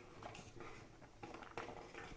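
Faint, irregular soft taps and scrapes of a steel ladle stirring thick milk and rice in a metal kadhai.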